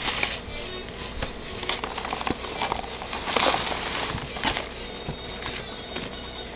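A thin clear plastic cup crinkling in a gloved hand as crumbly soil debris is tipped and shaken inside it, with scattered pattering and crackling of the grains. The crinkling is loudest about three and a half seconds in.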